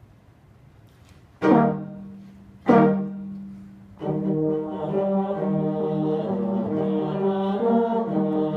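Small ensemble of brass and bowed strings playing: two loud accented chords about a second and a half apart, each dying away, then sustained playing with moving lines from about four seconds in.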